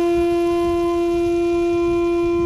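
Shakuhachi holding one long, steady note rich in overtones, with a low rumbling noise underneath.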